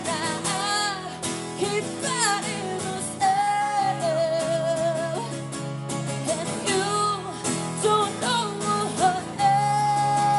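A woman singing a held, wavering melody into a microphone, accompanied by a strummed acoustic guitar, in a live duo performance.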